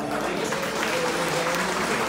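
Audience applauding in a hall just after a song ends.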